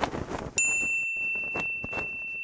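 Logo-animation sound effects: the fading, rustling tail of a whoosh, then about half a second in a bright bell-like ding whose high tone rings on steadily.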